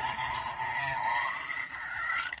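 A person's shrill, drawn-out squealing laugh, its pitch wavering.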